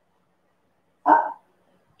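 A woman's voice giving one short spoken call, "Hop", about a second in, with near silence around it.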